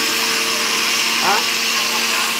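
Two countertop blenders running steadily together: a whirring motor hum under a high, even rush of blending.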